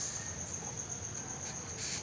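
A steady, high-pitched, slightly pulsing trill like an insect's runs through the background. Near the end comes a faint scratch of a pencil drawn along a plastic ruler on paper.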